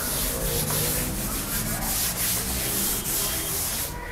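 A cloth duster wiped back and forth across a chalkboard, erasing chalk: a hissy rubbing in repeated strokes that stops abruptly at the end.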